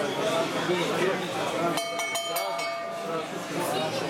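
Indistinct voices of a ringside crowd chattering in a gym hall. About two seconds in comes a short run of steady electronic beeps, broken into a few quick pieces.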